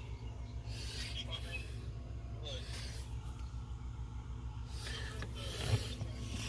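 A low, steady rumble with an even pulse, and faint voices in the background.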